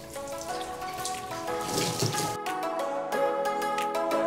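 Water from a garden hose spattering and dripping as a plastic kayak is rinsed, under background music with a steady melody.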